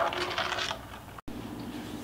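A spatula stirring thick champurrado in a stainless steel pot, scraping rapidly against the bottom and sides. The scraping dies away within the first second. A brief dropout comes just past halfway, then quiet room tone.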